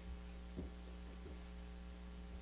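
Steady low electrical mains hum in the microphone and sound system, with two faint soft taps about half a second and a second and a quarter in.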